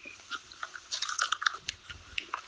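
A person's mouth clicks and lip smacks close to the microphone: a quick, irregular run of small clicks.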